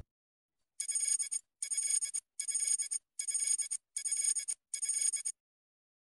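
Six short bursts of a high electronic ringing tone, evenly spaced a little under a second apart, starting about a second in.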